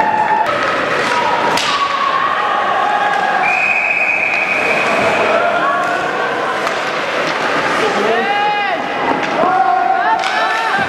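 Shouts and calls of voices echoing around an ice hockey rink, with a couple of sharp knocks in the first two seconds.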